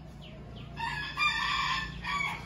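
A rooster crowing: one long call that starts about three-quarters of a second in and carries on to the end, with faint small bird chirps just before it.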